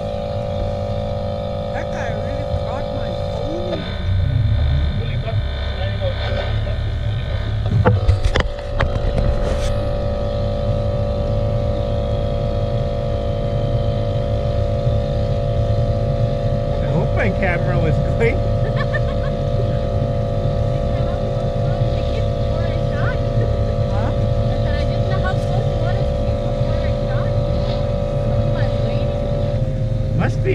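Outboard motor driving a small aluminium boat, running steadily at speed. The engine note shifts about four seconds in, and there is a brief knock around eight seconds.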